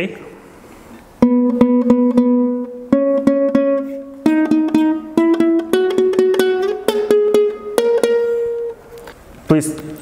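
A Kazakh dombra played with quick strumming strokes. After a short pause it runs up a rising series of about seven fretted notes, each struck several times, with each note fretted at the end of the fret so it rings cleanly.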